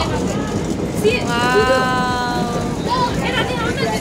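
People's voices over a steady background hum of a busy indoor market. About a second in, a voice holds one long note for about a second and a half.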